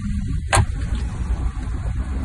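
Mercedes-Maybach G650 Landaulet's V12 biturbo engine idling, with a single sharp thump about half a second in as the driver's door is shut.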